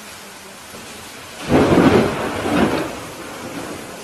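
Steady rain with a sudden thunderclap about a second and a half in, rumbling for about a second and a half before it fades back into the rain.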